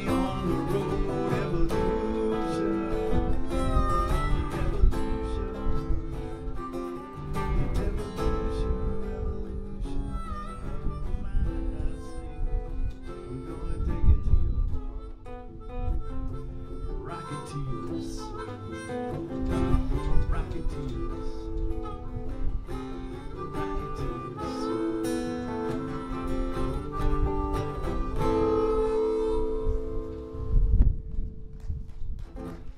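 Acoustic guitar strumming with a harmonica playing lead over it: an instrumental break between sung verses of a folk song.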